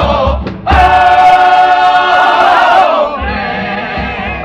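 Male comparsa chorus singing in several-part harmony, backed by guitar and low regular drum beats. A long held chord swells about a second in and gives way to softer singing near the end.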